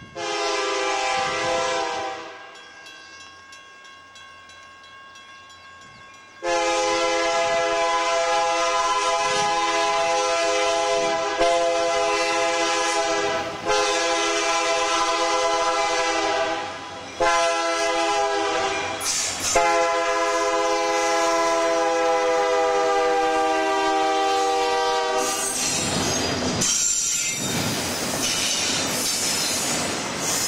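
Union Pacific SD70M diesel locomotive's Nathan K3HA air horn sounding for a grade crossing: one blast of about two seconds, then after a short pause a long run of blasts with brief breaks, the last one held long. Near the end the horn stops and the locomotives and double-stack container cars pass close by with a loud rumble and wheel clatter.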